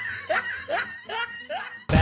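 A man laughing quietly in a run of about five short rising laughs that fade out. Music cuts in sharply just at the end.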